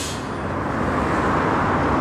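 Road traffic noise: a steady rush of passing cars, swelling slightly toward the end.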